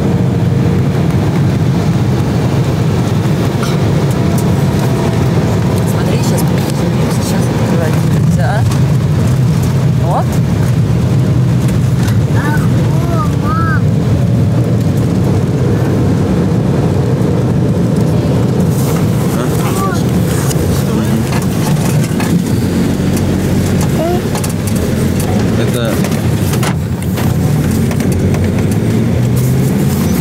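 Jet airliner cabin noise: a steady, loud, low drone of the engines and airflow.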